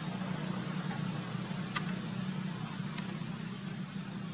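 Steady low hum with an even background hiss, broken by two short sharp clicks, one a little under two seconds in and one about three seconds in.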